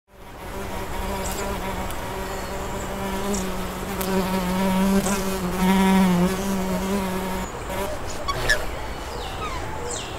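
A fly buzzing in flight: a steady low drone that swells louder and dips in pitch about six seconds in, then stops a little later. A few short, sharp sounds follow near the end.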